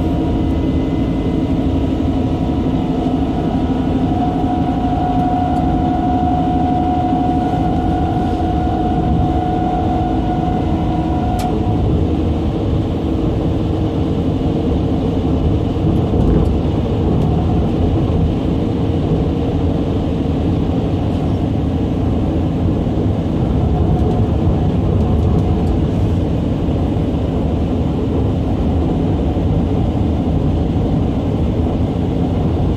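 Running noise heard inside the cab of a KTX-Sancheon-type SRT high-speed train travelling through a tunnel: a steady, loud rumble, overlaid by a set of steady whining tones that cut off suddenly about eleven seconds in.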